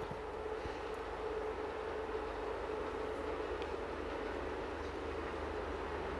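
Steady background hum and hiss with a faint steady tone, and a few faint clicks.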